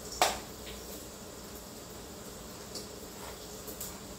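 Handheld manual can opener cutting around a can: a sharp click about a quarter-second in as it bites the lid, then a few faint ticks as the key is turned.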